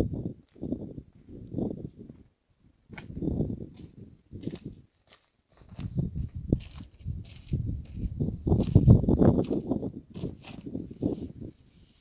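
Wind buffeting the microphone in irregular gusts of low rumble, with short quiet gaps between them.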